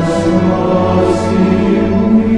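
A choir singing a slow hymn, holding long notes.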